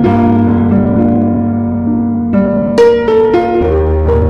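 Slow solo piano music: a chord rings and fades, then new notes are struck a little after two seconds in, with a low bass note near the end.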